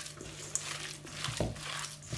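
Hands kneading a raw minced-meat and breadcrumb kofta mixture in a stainless steel bowl: faint, irregular squelching with a few small clicks.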